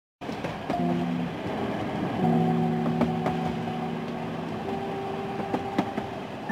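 Steady rumble of a moving train carriage with occasional sharp clacks, under sustained held chords of background music that shift every second or two.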